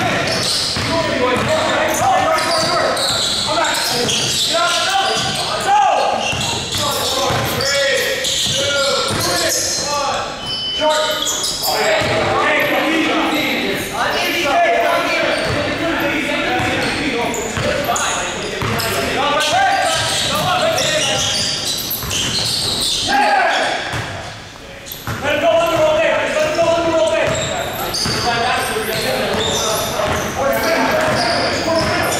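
Basketball game in a gym: a ball dribbled and bouncing on the hardwood court amid players' voices and shouts, echoing in the large hall.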